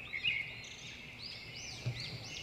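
Faint bird chirps in the background: several short calls, each rising and falling quickly in pitch, between the spoken syllables.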